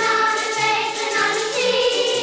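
Children's choir singing a song with instrumental backing: held sung notes over a stepping bass line.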